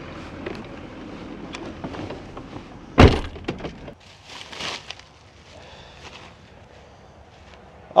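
A single sharp crack about three seconds in: a fishing rod snapping as it is run over, the break taking its reel seat off. Softer rustling and shuffling follow over a faint low rumble.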